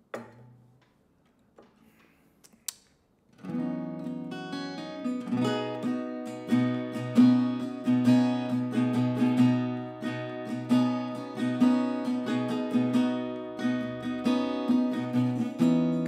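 Acoustic guitar starting up about three and a half seconds in and playing a steady picked pattern of notes over a ringing low string. Before it, near silence with a couple of faint clicks.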